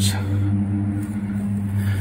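A motor vehicle's engine running with a steady, low, even-pitched hum.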